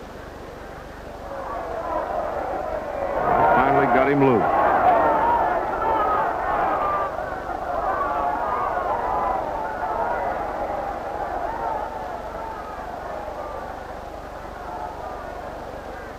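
Arena crowd shouting and yelling, many voices at once: it swells about three seconds in, with one man's loud yell standing out around four seconds, then slowly dies down.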